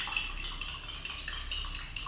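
A spoon stirring salt into a cup of water, clinking lightly and repeatedly against the inside of the cup.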